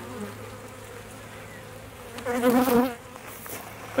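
Steady hum of a honeybee colony from an open hive, a colony that the beekeeper believes is queenless. About two seconds in, a louder wavering tone rises and falls for under a second.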